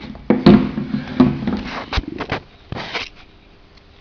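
Handling noise as a copper tube is pushed into a brass push-fit coupling: a scattered series of sharp clicks and knocks with some rustling.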